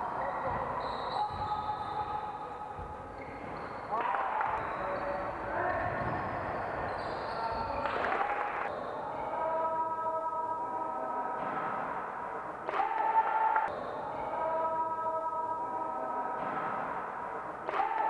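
Basketball bouncing on a gym floor with voices echoing in a large sports hall, over steady held tones in the second half and a few sudden loud knocks.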